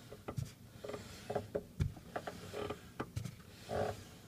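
Right front disc brake of a 1999 Honda Civic squeaking in short repeating groans, cyclic with the wheel's turn, as the wheel spins with the brake held lightly on. A few sharp knocks are mixed in.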